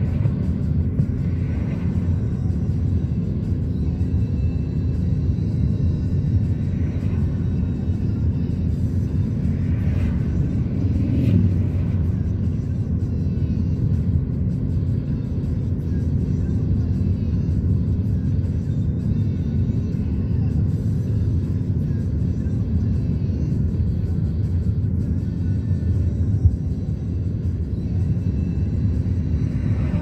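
Steady low road and engine rumble of a moving car, heard from inside the cabin, with music playing along with it.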